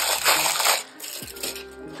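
Plastic sticker-pack packaging rustling as it is handled, for about the first second, then a short click. Faint music with held notes sits underneath in the second half.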